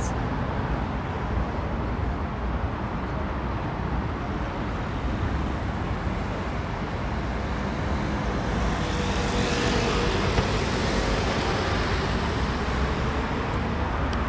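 Steady road traffic at a wide city intersection, cars and buses passing. About eight seconds in it grows louder and brighter for a few seconds as a vehicle passes close.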